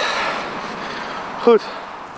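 A man's voice says one short word ("Goed") about one and a half seconds in, over a hiss of background noise that slowly fades.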